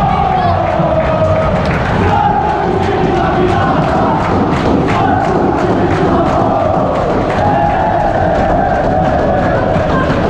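Football stadium crowd singing a chant together, many voices holding a melody in unison, with frequent sharp beats running through it.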